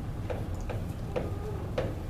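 Chalk on a chalkboard while numerals are written: a series of short, sharp taps at an uneven pace, about two a second.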